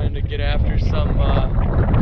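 Wind buffeting the camera's microphone: a loud, irregular low rumble throughout.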